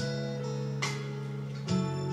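Instrumental band accompaniment of a slow Korean trot song, with held chords that change near the start and again near the end.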